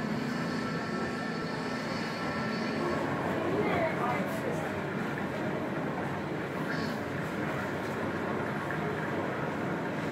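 Indistinct voices murmuring over a steady rushing, rumbling background noise.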